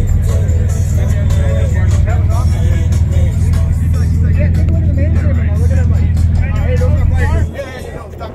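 Competition car audio subwoofers playing a very loud, steady deep bass tone that cuts off suddenly about seven and a half seconds in, with voices over it. A woofer in the system caught fire on this run.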